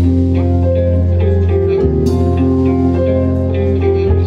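Symphonic metal band playing a slow ballad live: held keyboard and guitar notes over a deep bass line, with a few light cymbal hits.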